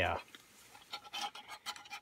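A quick run of light clicks and scrapes in the second half, from a titanium pot being handled on the folding pot supports of a small gas canister stove.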